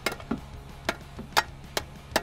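A screwdriver tapping and clicking against metal parts: about six sharp, uneven taps in two seconds.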